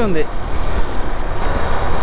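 Steady rush of wind on the microphone mixed with motorcycle engine and road noise while riding at a steady highway speed.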